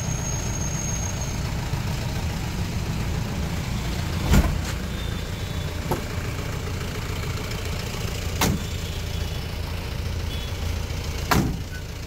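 Steady low rumble of a motor vehicle engine idling, with four short sharp knocks a few seconds apart.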